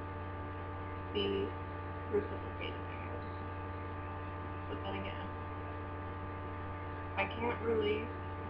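Steady electrical mains hum, a low drone with a stack of fainter steady tones above it, running under the recording. A few brief, faint vocal sounds break through, with soft speech starting near the end.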